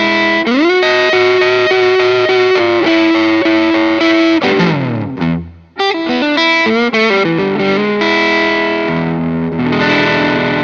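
Gibson Les Paul Standard electric guitar played on its neck pickup with light overdrive. A lead line bends up into a long held note about half a second in and slides down around five seconds. After a brief drop-out it moves through quicker notes and ends on a ringing chord that fades near the end.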